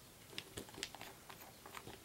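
Faint, irregular small clicks and taps, about ten in two seconds, from handling a metal nail-stamping plate and stamping tools.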